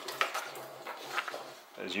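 A sheet of printer paper rustling as it is picked up from the printer's output tray, with a few short ticks of handling.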